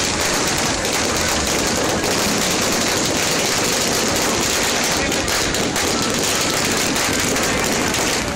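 Fireworks crackling densely and without a break. Countless rapid small pops run together into a steady rattle.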